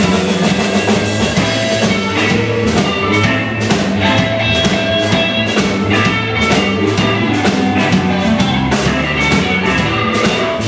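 Live blues band playing an instrumental passage: electric guitars over a steady drum-kit beat and bass.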